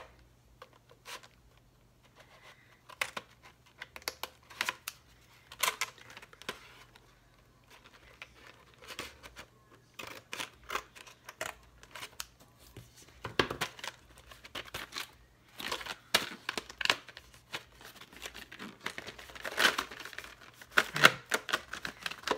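Scissors snipping at packaging and the packaging being crinkled and torn open by hand: scattered sharp clicks and rustles, growing busier and louder in the second half.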